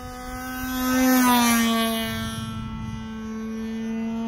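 Glow-fuelled (nitro) engine of a radio-control model airplane running steadily in flight, a steady buzzing note that swells to its loudest about a second in as the plane passes, then drops a little in pitch and fades slightly.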